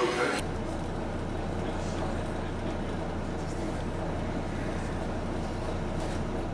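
A motor vehicle's engine running steadily, a low even hum over traffic noise. It starts suddenly about half a second in, after a brief moment of voices.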